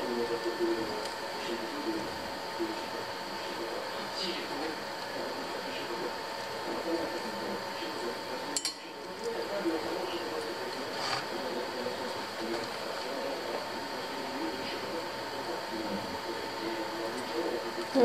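Knife slicing sausage held in the hand, the pieces dropping into a glass bowl with a few light clinks. A steady faint hum runs underneath.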